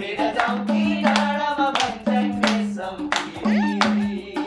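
A madal, the Nepali two-headed barrel drum, played by hand in a quick steady rhythm, with people clapping along and a voice singing over it.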